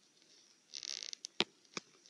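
A short, faint hiss, then two sharp clicks, all quiet.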